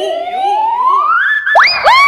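Cartoon-style slide-whistle sound effect: a whistle tone climbs slowly and steadily for about a second and a half, then sweeps quickly up again near the end and holds.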